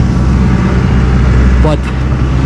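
Machinery from maintenance work running close by with a steady low drone.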